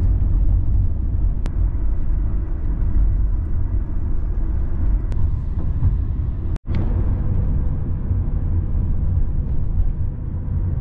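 Steady low rumble of road and engine noise inside a moving car's cabin, with a brief dropout about two-thirds of the way through.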